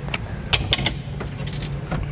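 A fiberglass in-floor storage hatch being unlatched at its flush pull-ring latch and lifted open, giving about six sharp clicks and rattles in the first second and a half. A steady low hum runs underneath.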